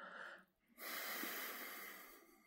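A man's audible breathing: a short breath that ends about half a second in, then a longer one after a brief gap.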